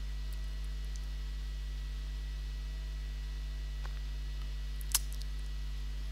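Steady low electrical hum with a single sharp click about five seconds in, the click of a computer mouse button.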